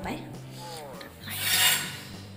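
Rubbing, rasping handling noise against a hand-held phone's microphone, loudest for about half a second around a second and a half in, over a low steady hum.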